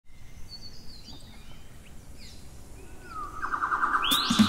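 Birds chirping and calling in short sliding notes over a low outdoor hiss. Near the end a louder, fast-pulsing tone rises in volume.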